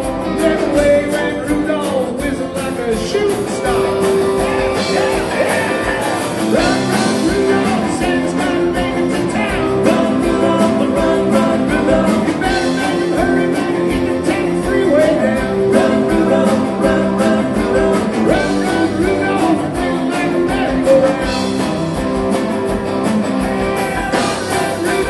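Live rock and roll band playing at a steady driving beat: electric and acoustic guitars, bass, keyboards and a drum kit.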